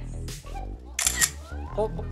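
A camera shutter clicks once, sharply, about a second in, over quiet background music.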